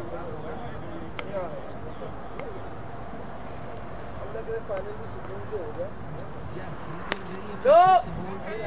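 Faint outdoor chatter and calls of voices across an open field, with a few sharp faint clicks. Just before the end comes one loud, short shout that rises and falls in pitch.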